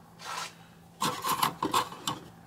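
Plastic model tanks being handled and slid across a shelf: a short scrape, then from about a second in a quick run of further scrapes and rubs.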